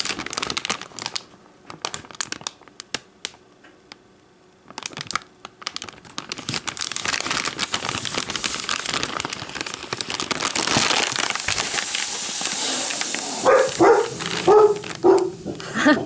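A MealSpec flameless heater bag's plastic crinkling as it is handled, then its water-activated heater pouch sizzling: a hiss that builds and grows louder for several seconds as the reaction gets going and makes steam. Near the end, dogs bark a few times.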